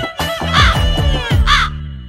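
Title jingle: music with deep falling bass hits and a crow cawing on the beat, twice, about one caw a second. The jingle fades out near the end.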